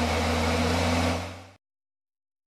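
Heavy diesel engine of a snow-clearing machine running steadily with a low, even hum, then fading out about a second and a half in.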